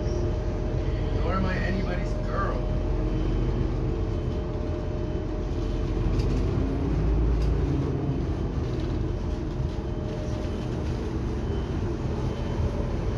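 Cabin noise inside an articulated city bus: a steady low rumble of engine and road, swelling briefly in the lowest register about seven seconds in.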